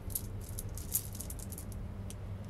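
Small decorative pebbles rattling and clicking together as they are handled, a quick run of clicks over about a second and a half with one louder click near the middle, over a steady low hum.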